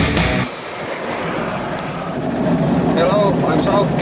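Intro music stops about half a second in, leaving the steady rushing wind and tyre noise of a moving velomobile, heard from inside its shell.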